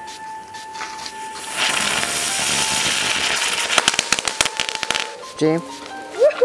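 Handheld sparklers lit and burning: a loud fizzing hiss starts about a second and a half in, and a rapid run of sharp crackles follows before it cuts off about five seconds in.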